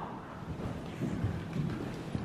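Muffled, irregular low thuds of a horse's hooves trotting on the sand footing of an indoor riding arena, over a low rumble.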